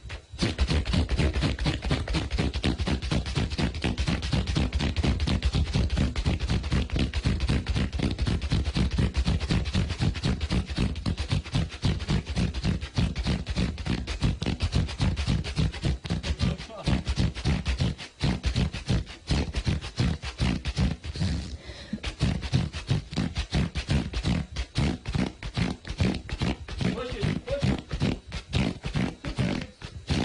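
A long, rapid run of queefs (vaginal wind), about three a second, some ninety-three counted in all, with a couple of brief gaps in the second half.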